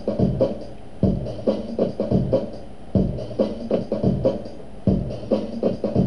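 Sampled drum loop played back by a software sampler and retriggered about every two seconds. The loop is too fast for the song's tempo, so it runs out just before each retrigger and leaves a brief gap.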